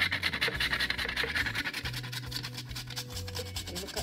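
Whole nutmeg being grated on a metal hand grater: rapid, rasping scrapes, one after another, growing fainter toward the end.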